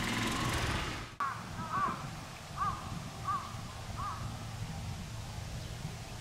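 A bird calling about five times, short arched calls roughly every three-quarters of a second, over a steady outdoor background. A louder stretch of noise cuts off abruptly about a second in.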